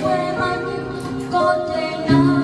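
A young woman singing a Vietnamese song into a microphone, holding long notes.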